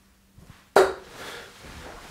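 A 23 g tungsten steel-tip dart (Harrows Damon Heta) striking a bristle dartboard: one sharp thud about three quarters of a second in, with a short ringing tail.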